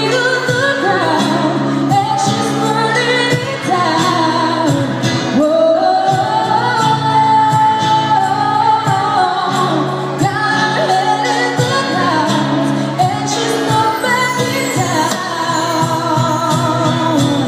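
Live acoustic band music: a woman sings the melody, holding one long high note around the middle, over acoustic guitar chords and steady cajon beats.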